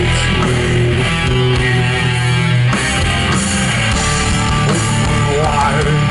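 Doom metal band playing live: heavy distorted guitars and bass over drums in a slow instrumental passage, heard from the crowd. In the second half a wavering melody line rises above the mix.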